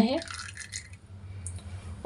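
A thin stream of mustard oil trickling faintly into an iron bowl, fading away within the first second, with a small click about one and a half seconds in.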